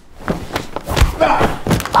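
A man is thrown down onto a tiled floor in a brief scuffle: several thumps, the heaviest about a second in, with a short grunt.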